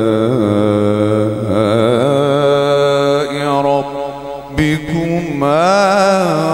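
A man's voice reciting the Quran in a slow, melodic chant (tilawat), drawing out long notes that waver in pitch. About four seconds in, the voice drops off and there is a short knock. It then returns on a loud rising phrase.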